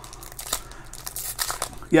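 Foil trading card pack wrapper crinkling as it is worked open by hand, with a light, irregular crackle.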